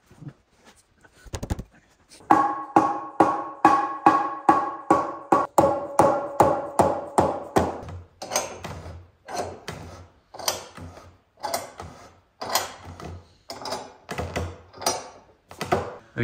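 Mallet knocking the joints of a hardwood door frame home during a dry assembly: a fast run of knocks, about three a second, starting about two seconds in. For the first several seconds each knock carries a clear ringing tone, and then the knocking goes on with less ring.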